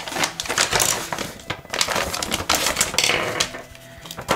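Plastic packaging bag crinkling and rustling as it is opened and its contents are tipped out, with irregular clicks and rattles of small parts.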